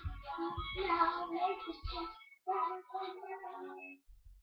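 A young girl singing a song in short phrases, with low thumps under the first two seconds; the singing stops abruptly just before the end.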